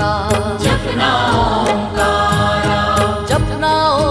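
A Hindi devotional Shiva dhun: a male voice sings the repeated chant-like melody over instrumental backing, with a steady percussion beat.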